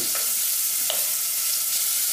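Diced bacon sizzling steadily as it fries in a thin layer of oil in a pot, stirred with a spoon; one brief click about halfway through.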